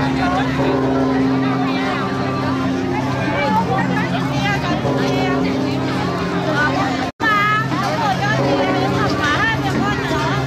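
Crowd of people talking over one another, with a steady low hum or drone underneath; the sound cuts out for an instant about seven seconds in.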